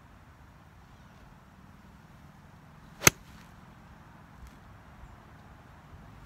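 A golf iron striking a ball off a hitting mat: one sharp, crisp click about three seconds in, over faint outdoor background.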